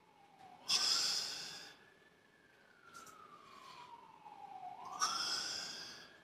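Two hard exhalations, about four seconds apart, from a man straining through dumbbell curls. Behind them a faint siren wails slowly down and up in pitch.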